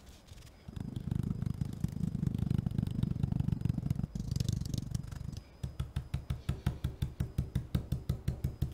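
Stencil brush stippling paint through a plastic plaid stencil onto a wooden cutout: a fast run of dull dabbing taps, settling in the second half into a steady rhythm of about five taps a second.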